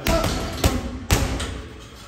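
Gloved punches landing on a Title Boxing heavy bag: three thuds in about a second, then a lull.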